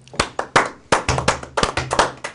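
A small group of people clapping their hands, starting a moment in, with quick, uneven claps several times a second.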